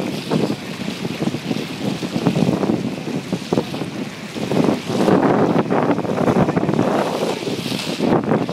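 Wind buffeting the microphone over sea water rushing and splashing along a ship's hull, rising and falling in uneven surges and loudest from about five seconds in.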